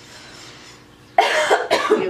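A woman coughing: a quick run of about three harsh coughs starting just over a second in, a fit from a tickle in her throat.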